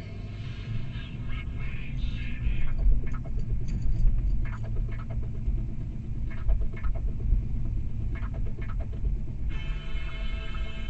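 Low rumble of a moving car heard from inside the cabin, with the car radio playing under it. A string of short sharp clicks runs through the middle, and the radio's voice or music comes back in near the end.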